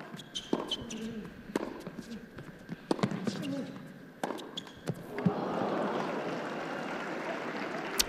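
Tennis ball struck back and forth by rackets in a rally on an indoor hard court: sharp pops every second or so. About five and a half seconds in, the point ends and crowd applause rises.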